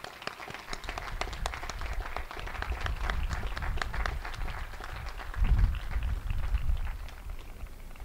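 Audience applauding, a dense run of hand claps, with a low rumble swelling about five and a half seconds in.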